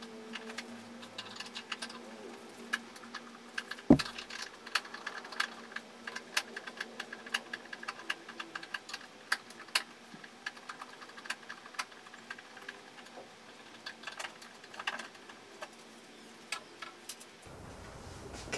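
Hand screwdriver backing out the screws of a TV stand leg: a run of small, irregular metallic clicks and ticks as the bit turns in the screw heads, with one sharper knock about four seconds in.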